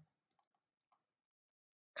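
Near silence, with only a few very faint ticks in the first second.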